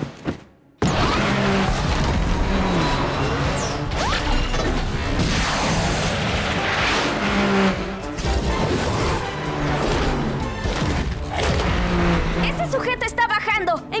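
Action-cartoon soundtrack: a driving musical score over sound effects of space-vehicle engines and crashing impacts. It starts after a brief dropout just after the beginning.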